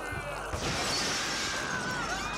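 Cartoon sound effect of glass shattering: a burst of breaking glass about half a second in that dies away over about a second.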